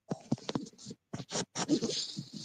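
Irregular scratching and clicking noise over a video-call microphone, starting abruptly after silence.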